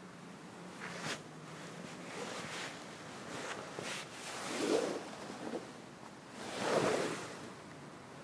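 Cotton karate gi rustling against a clip-on lapel microphone in several soft swells as the arms move through a sequence of blocks.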